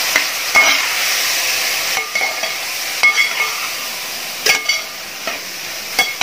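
A spoon stirring chopped raw mango through chilli masala and oil in a metal pan: a steady sizzle, with the spoon scraping and clinking against the pan every second or so.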